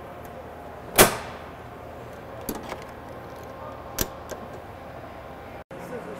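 Safety disconnect switch handle thrown to off with one loud metal clunk about a second in, followed by two lighter clicks, as power to an overhead crane is locked out. A steady low background hum runs underneath.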